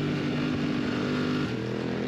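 BMW F 900 R's parallel-twin engine running at steady revs, heard onboard from the race bike, with its note shifting slightly about one and a half seconds in.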